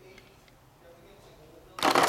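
Quiet room tone, then a short, loud rustle near the end: handling noise as a plastic camera is moved and set down among cardboard boxes.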